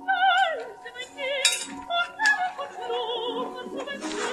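A woman's high operatic voice singing with a wide, regular vibrato, the voice of a singing lesson under way. A few short sharp clicks fall in with it, the brightest about one and a half seconds in.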